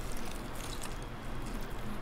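A person chewing a mouthful of fried chicken with a crunchy crust, quiet with scattered faint crackles.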